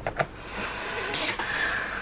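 Brittle plastic lid being peeled off a jelly gouache paint cup: a couple of small clicks at the start, then a longer scratchy tearing noise.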